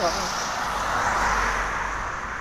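A road vehicle passing close by: a rush of tyre and engine noise with a low rumble that swells to its loudest about a second and a half in, then eases off.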